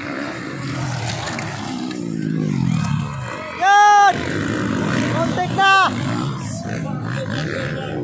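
Motocross dirt bike engines revving, their pitch rising and falling as riders race past on the dirt track. Two loud, high-pitched blasts cut through: one about half a second long a little before the middle, and a shorter one about two seconds later.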